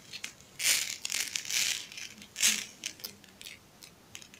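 Crinkling rustles in several bursts, strongest just under a second in and again about two and a half seconds in: a plastic sheet and a rhinestone-covered collar strip being handled by hand.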